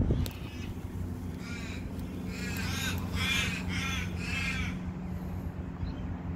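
A crow cawing about five times in quick succession, starting about a second and a half in, over a low steady hum.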